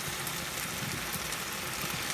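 Steady sizzle of chicken and rice frying in pans on a gas hob, with a low rumble underneath.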